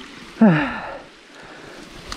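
A man's short wordless vocal exclamation, falling in pitch like a groan, about half a second in, over faint steady background noise.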